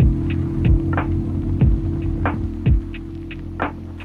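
Background electronic music: a steady low drone with deep kick-drum hits that drop in pitch, over light percussive ticks.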